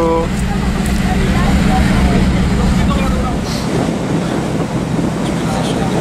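Steady low drone of a ferry's engines heard on its open deck, with wind noise on the microphone and faint voices.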